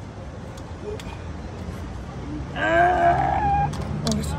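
A steady low hum, then a little past halfway one drawn-out, high-pitched wordless vocal cry lasting about a second that bends in pitch and ends on a held high note.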